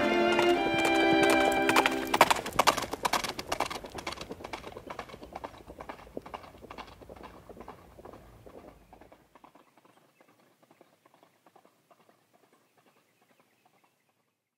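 Music holding a chord stops about two seconds in, leaving a horse's hoofbeats: a steady clip-clop that fades away gradually to silence.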